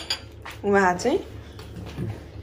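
A metal spoon clinking and scraping against a ceramic bowl, with a short vocal sound about half a second in that rises in pitch at its end.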